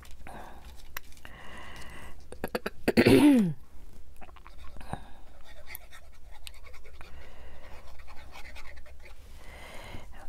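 Small paper pieces being handled with metal tweezers and a fine-tip glue bottle: soft rustles and small clicks. About three seconds in, a quick run of clicks is followed by a brief, falling vocal 'mm', the loudest sound.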